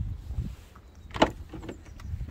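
Wind rumbling on the microphone, with one short, sharp knock a little over a second in.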